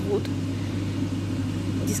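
A steady low mechanical hum, unchanging throughout.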